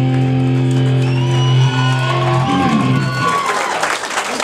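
A live metal band's final chord rings out on distorted electric guitars and bass, held steady, then cuts off about three seconds in. A crowd starts cheering and clapping.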